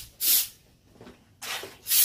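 Short bursts of hiss, about four in two seconds, each a fraction of a second long with quiet between.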